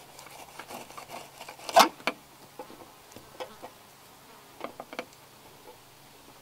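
Fillet knife scraping between fish skin and a plastic table as a fillet is skinned, with one sharp tap a little before two seconds in and a few lighter clicks later. A faint steady buzz runs underneath.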